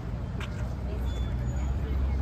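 A car engine running at a steady idle, a low rumble under faint voices of people talking, with one sharp click about half a second in.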